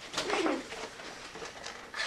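A boy's short vocal groan that falls in pitch, starting just after the start and lasting about half a second.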